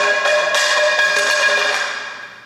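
A sudden metallic clang that rings on with a bell-like tone for about two seconds, then fades away.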